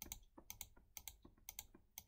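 Faint computer mouse clicks in quick succession, several a second, each click placing a new point along a spline traced in CAD software.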